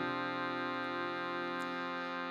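Acoustic guitar chord left ringing steadily, with no new strum, in a pause between sung lines of a folk song.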